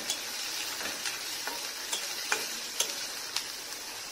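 Chopped onions sizzling steadily in hot oil in a steel kadai, with a few short sharp clicks scattered through.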